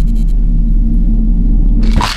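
Loud, steady low rumbling drone from an animated short's soundtrack. It stops near the end as a brief burst of higher noise comes in.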